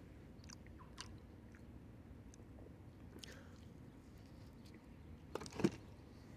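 Faint mouth sounds of someone chewing a soft cookie with cream cheese frosting: scattered small wet clicks. A short burst of handling noise, a couple of clicks and a soft knock, comes near the end.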